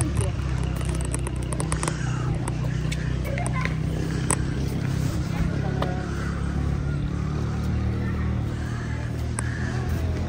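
A steady low rumble with faint voices and a few light clicks over it.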